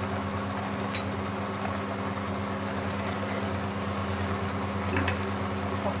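Steady electric hum from the hob under a frying pan of curry sauce, with one light tap about a second in.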